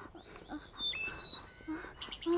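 Birds chirping and whistling, with short rising-and-falling high calls, over a few short low calls.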